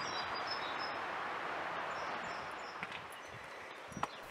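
Outdoor ambience: a steady rushing hiss that fades out about three seconds in, with faint high bird chirps over it.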